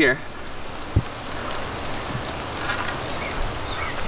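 Steady rain falling on creek water and wet concrete, with one dull low thump about a second in.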